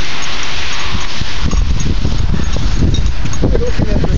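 Wind buffeting the camera's microphone: a loud, uneven rumble with a hiss above it, heaviest in the second half.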